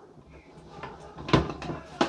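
Toy front-loading washing machine turning its water-filled drum during a rinse: a low steady motor hum with a few light knocks and one sharp clunk a little over a second in.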